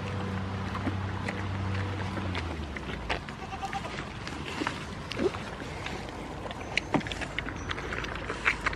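Goats chewing and smacking on hand-fed vegetables close by, a scatter of short wet clicks and crunches throughout. A low steady hum fades out a couple of seconds in.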